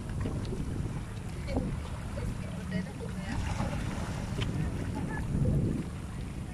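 Wind buffeting the phone's microphone in a steady low rumble, over small waves washing among shoreline rocks; the rumble swells briefly near the end.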